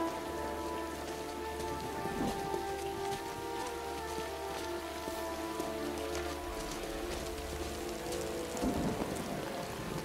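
Heavy rain falling steadily on a street, with held notes of a slow musical score and a low drone underneath.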